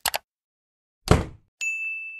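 Sound effects for an animated title card: a short click, a sharp hit about a second in, then a bright steady ding near the end.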